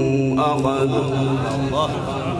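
A man reciting the Qur'an in a melodic chant, holding one long note that ends shortly before the end. About half a second in, other voices come in over it with wavering pitch.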